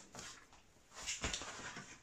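Faint handling sounds of a thin plywood sheet on a balsa wing frame: a brief rustle, then about a second in a light tap and soft sliding as the sheet is set in place for marking.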